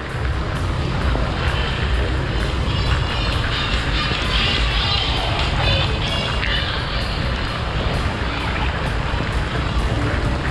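Riding a motorbike through heavy rain: a steady rush of wind and rain on the microphone over the motorbike's engine, with music playing alongside.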